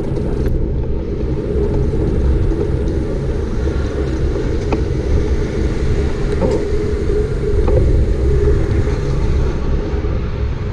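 Steady low rumble of wind buffeting the camera's microphone and road noise from a moving bicycle on asphalt, with a few faint clicks.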